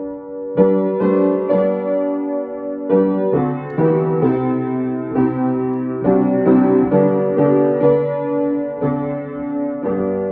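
Upright piano playing a slow hymn in full chords, a new chord struck about every half second to second and left to ring.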